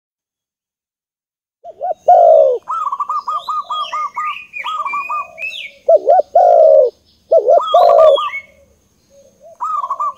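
Birds calling: low, falling cooing notes mixed with quick runs of chirps and higher twitters, starting about one and a half seconds in, with short pauses between phrases.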